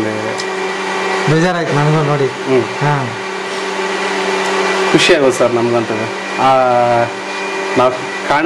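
Men's voices talking in short phrases over a steady electric motor hum that runs without a break.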